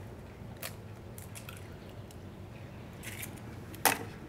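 Fresh eggs being cracked by hand over a stainless steel bowl: a few faint cracks and crunches of eggshell, with one sharper click near the end.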